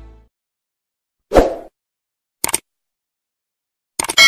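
Sound effects of a YouTube subscribe-button animation: the intro music fades out, then one short, loud effect about a second and a half in, and a quick double mouse click about a second later.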